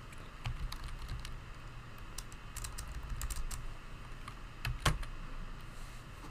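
Typing on a computer keyboard: irregular key clicks, with one louder knock about five seconds in.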